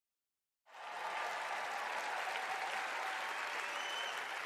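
Large crowd applauding. The applause cuts in suddenly, under a second in, after silence, and then holds steady.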